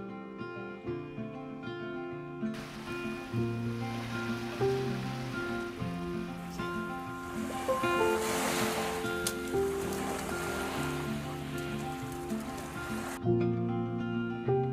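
Acoustic guitar music plays throughout. From a few seconds in, small sea waves wash onto a beach underneath it, swelling in the middle and cutting off suddenly near the end.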